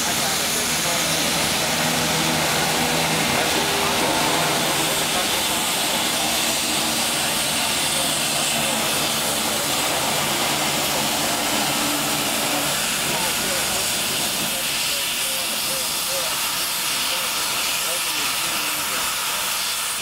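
Pere Marquette 1225, a Lima-built 2-8-4 Berkshire steam locomotive, hissing steadily as it vents steam while it is turned on the turntable. A low steady hum runs under the hiss and fades out about two-thirds of the way through.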